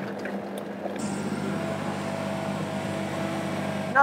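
Countertop blender running steadily, blending dry coconut pieces with water into coconut milk; its sound grows a little louder and fuller about a second in.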